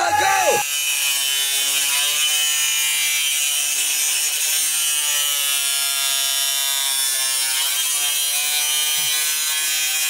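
A steady buzzing drone of several held tones. It shifts slightly about two seconds in and again near eight seconds. In the first moment a shouted voice over crowd noise cuts off abruptly.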